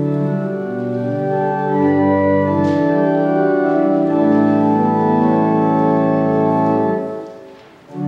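Organ playing the psalm antiphon through once as an introduction, in sustained chords that change every second or so and fade away near the end.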